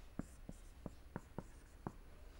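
Marker pen writing on a whiteboard: a string of short, faint ticks, about six in two seconds, as letters and axis lines are put down.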